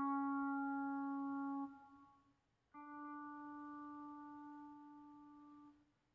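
Pedal steel guitar VST plugin notes played one at a time by an autosampler. A held note stops a little under two seconds in with a short fade. After a brief gap comes a second, quieter note of about the same pitch, held for about three seconds and cut off near the end.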